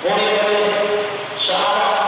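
A man's voice chanting a liturgical prayer into a microphone, two long notes on a steady pitch, the second starting about a second and a half in.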